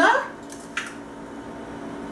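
A spoon scooping instant coffee granules: two short scrapes in quick succession under a second in.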